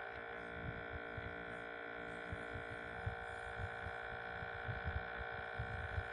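A fan running with a steady hum carrying several held tones, loud against the voice, with faint low thumps now and then.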